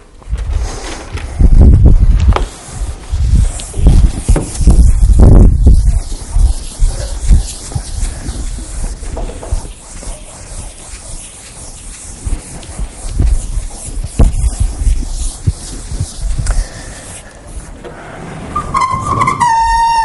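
Handling noise from a body-worn microphone as a lecturer moves about: heavy low thumps and rustling at first, then the scrubbing of a chalkboard being erased. A voice comes in near the end.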